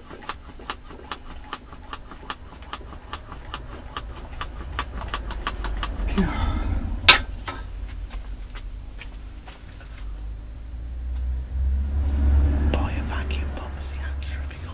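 Hand-held brake bleeder vacuum pump squeezed rapidly, about three to four clicking strokes a second, pulling a vacuum on a jar of wood soaking in oil. The strokes stop about six seconds in, followed by a single sharp knock as the pump is set down, then a low rumble near the end.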